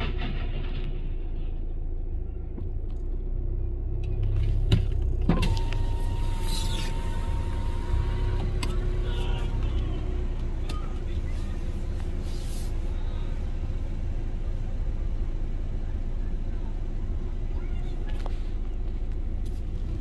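Steady low rumble of a car heard from inside its cabin, with a few short knocks and clicks. A thin steady high tone sounds for about three seconds, starting a little over five seconds in.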